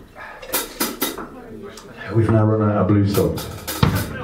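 A few sharp clinks and taps, then a low held note lasting about a second, followed by more clinks.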